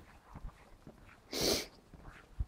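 A dog snorting once, a short sharp blast of breath through the nose, about a second and a half in.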